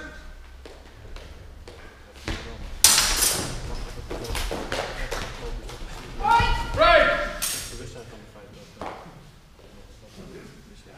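A sharp clash of sparring swords about three seconds in, ringing on in a large hall, followed by scuffling and knocks as the fencers close and grapple. Then come loud shouts a little past the middle.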